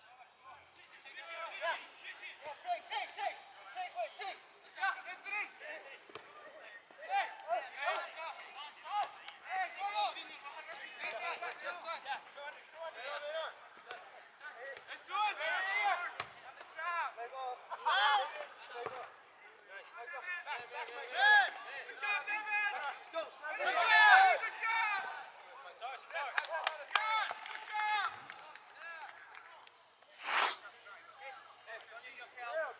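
Distant shouts and calls of soccer players and spectators across an open field, coming in short bursts, loudest about sixteen and twenty-four seconds in, with a few sharp knocks in between.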